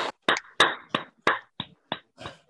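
Small audience applause dying away into a few separate claps, about three a second, growing fainter.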